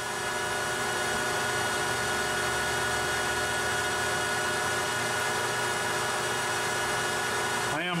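Metal lathe running steadily at about 1100 rpm, a constant motor and gear whine, while a carbide-insert tool takes a light cut of a couple of thousandths across the face of a cold-rolled steel part.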